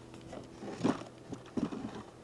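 Honeybees humming faintly and steadily around an open hive, with a few soft knocks and rustles from the wooden super being handled.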